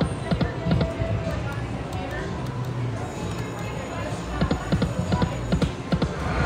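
Dancing Drums slot machine playing its game music and effects during a spin, with clusters of short sharp percussive hits about a second in and again near the end as the reels come to rest.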